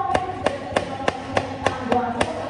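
Chef's knife chopping garlic cloves on a plastic cutting board, sharp even strokes about three a second, over background music.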